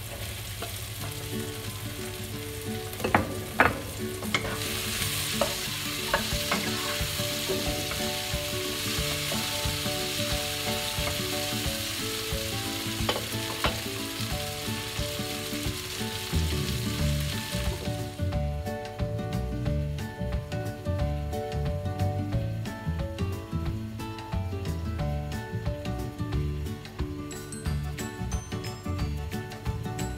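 Snake beans sizzling in hot oil in a wok as they are stir-fried with a wooden spatula, with a few sharp knocks of the spatula against the pan. The sizzle stops about 18 seconds in, leaving background music.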